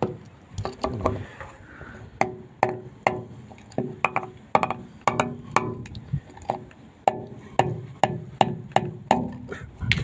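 Hammer blows struck over and over at an uneven pace, about two a second, each with a short metallic ring.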